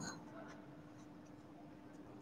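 Near silence: a pen tip faintly scratching and brushing over a paper sheet, over a faint steady hum.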